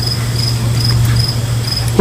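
Insects chirping in an even rhythm, about two to three short high chirps a second, over a steady low hum.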